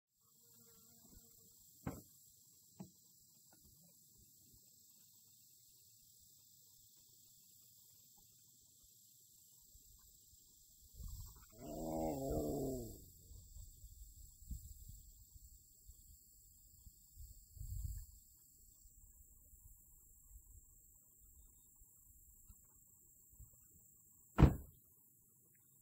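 A long, low strained groan of effort about halfway through, as a woman heaves at a woodstove too heavy to lift out of a car's back seat. A few faint knocks and clicks come before it and a dull thump follows.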